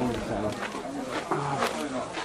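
Indistinct talking: voices that the transcript did not catch, at a moderate level.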